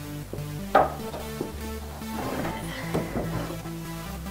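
Poplar boards of a half-lap jointed bed frame knocking and clattering as the rails are worked loose and lifted out: one sharp wooden knock about a second in, then a run of lighter knocks and rattles in the second half, over electronic background music.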